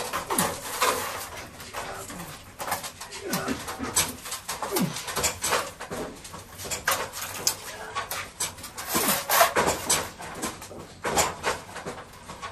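Wooden boards knocking and clattering against each other and the rack as lumber is pulled out and sorted, in irregular clusters of knocks, with a few short squeaks that drop in pitch.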